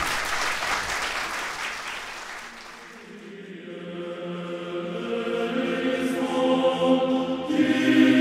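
Audience applause that fades out over the first few seconds, then a choir singing held chords fades in and grows louder.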